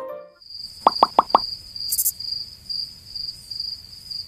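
Four quick pop sound effects in a row, about a second in, one for each line of on-screen text popping up. Then a steady, pulsing chirp of crickets, the comic sound effect for empty time passing.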